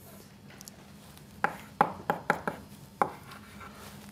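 Chalk tapping and scratching on a blackboard as characters are written: about six sharp, short taps in the second half, after a quiet start.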